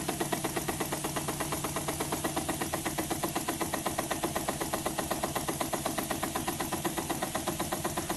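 Model single-cylinder steam engine built from a KLG spark plug, running on compressed air with twin flywheels, giving a rapid, even beat of exhaust puffs and mechanical clatter. It runs smoothly and steadily, freshly run in.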